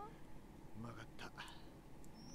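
Faint, soft voice close to a whisper, heard briefly around the middle.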